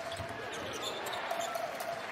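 Basketball arena ambience: a steady crowd murmur, with a basketball bouncing on the hardwood court.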